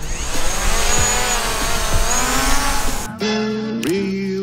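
Small folding quadcopter drone's propellers spinning up with a buzzing, wavering whine as it is launched from the hand, over background music. About three seconds in the whine stops and only the music carries on.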